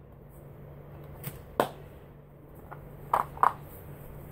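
A few sharp plastic clicks and knocks from a battery-powered motion-sensor LED light being handled, taken out of its mount and turned. The strongest click comes about a second and a half in.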